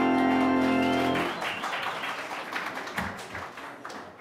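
Organ holding a final chord that cuts off about a second in, followed by the rustle and shuffle of a large congregation sitting down in wooden pews, with scattered knocks and clicks.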